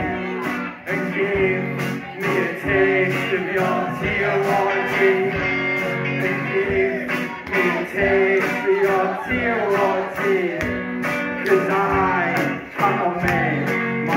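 Live rock band playing, with electric guitars, bass guitar, drums and saxophone.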